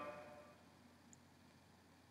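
Near silence: the end of a spoken word fades out in the first half second, then room tone.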